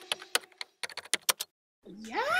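Computer keyboard typing: a quick, irregular run of keystroke clicks that stops suddenly about a second and a half in. A voice begins right at the end.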